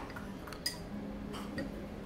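A small spoon clinks once, sharply, against a small porcelain cup while someone eats from it. A lighter tick follows under a second later.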